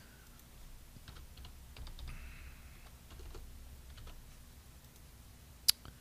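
Faint computer keyboard typing: a few scattered keystrokes, with one sharper click near the end.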